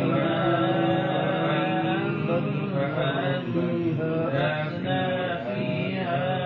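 A male Quran reciter chanting a verse in drawn-out melodic tajweed recitation, one unbroken voice holding long notes with slow, wavering pitch turns.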